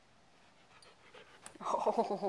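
Quiet room tone with faint scattered movement sounds and a single sharp click, then a voice exclaims "Oh" near the end.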